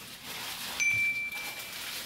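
A single chime note, held about a second and starting a little under a second in: the sound effect of a pop-up subscribe-and-like graphic. Under it is the light rustle of paper burger wrappers being pulled apart.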